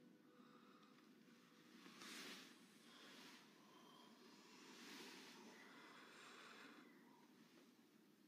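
Near silence with a few soft breaths, about two seconds in, around five seconds in, and again just after six seconds.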